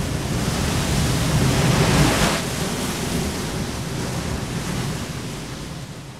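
Sound effect of surging sea water, a dense rush of surf-like noise that swells to a peak about two seconds in and then slowly eases off.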